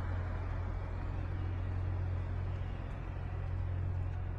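Steady low rumble of city traffic with a constant low hum underneath.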